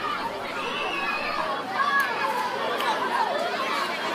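Many children's voices chattering and calling out at once, an indistinct din of a group of children at play, with a few louder calls about halfway through.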